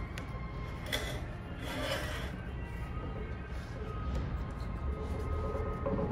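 Quiet background music over soft rubbing and handling noises as a rubber squeegee blade is pressed back onto the tabs of its frame, with a couple of louder scuffs about one and two seconds in.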